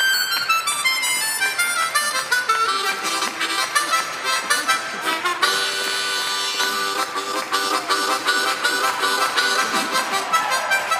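Harmonica played fast: quick runs of notes stepping downward at the start, a held chord in the middle, then rapid notes again.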